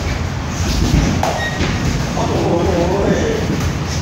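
Muay Thai sparring: a sharp strike of glove or shin guard landing about a second in, and a short drawn-out vocal call in the second half, over a steady low rumble.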